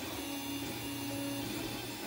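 Stepper motors of a large home-built 3D printer moving the print head while printing, a steady whine that changes pitch a few times as the moves change.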